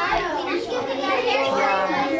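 Children talking, voices going on throughout.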